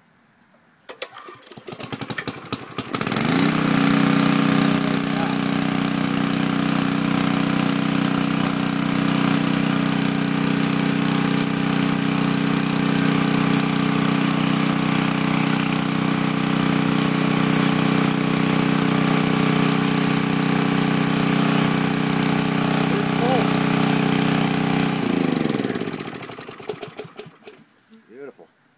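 Briggs & Stratton Intek engine on a Coleman Elite Series portable generator, pull-started after about three years of sitting: it fires on one pull, rising in pitch to a steady run about three seconds in. It runs evenly for about twenty seconds, then shuts down near the end, its pitch falling as it winds down.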